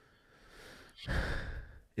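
A man taking an audible breath into his microphone, a sigh-like intake lasting about a second, starting about halfway through after a faint breath before it.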